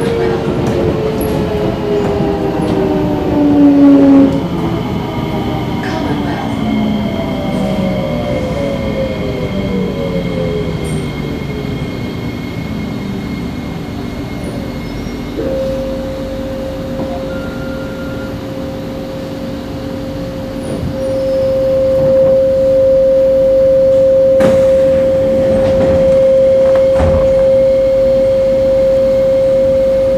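Electric metro train heard from inside the car, its traction motors whining in several falling tones as it slows, over rumbling wheel and rail noise. About halfway a steady high whine sets in and grows louder in the last third, with a couple of knocks near the end.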